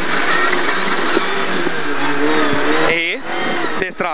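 Citroën Saxo rally car's engine running hard at steady high revs under load, heard from inside the cockpit. Near the end the note breaks off and cuts in and out sharply as the driver comes off the throttle.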